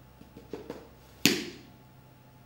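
A few faint page-handling ticks, then a small book clapped shut with one sharp slap a little over a second in.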